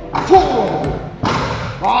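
An aluminium agility seesaw board tipping under a running border collie and banging down onto the floor with a loud thud, with the handler shouting encouragement near the end.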